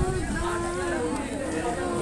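A voice singing a slow melody with long held notes, over people chatting in the background.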